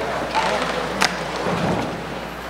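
Indistinct room noise of an audience in a large hall, with one sharp click about a second in.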